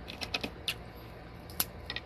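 Eating by hand from a plate: a handful of short, sharp clicks and ticks, a cluster in the first moments and two more near the end, from fingers picking at food on the plate and from chewing.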